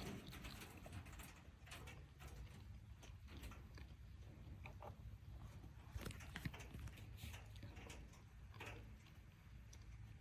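Near silence: faint scattered clicks and rustles over a low steady hum, with a few slightly sharper ticks about six seconds in.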